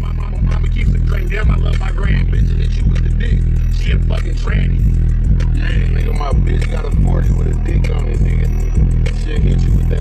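Music with a deep, pulsing bass line and a vocal over it, playing loudly in a car.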